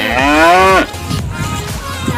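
One long drawn-out voice sound, under a second, rising and then falling in pitch, over background music.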